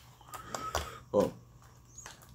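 A few light clicks of small fishing tackle being handled and sorted in the first second, as a hook is searched for.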